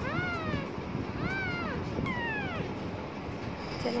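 A week-old kitten mewing three times in the first few seconds: thin, high cries that each rise and fall in pitch.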